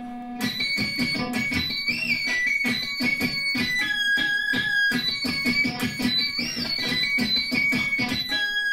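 Electric guitar played through a digital whammy pitch-shift pedal: a run of fast picked notes, with the pitch swept up and back down by the foot pedal twice, about two seconds in and again near the end.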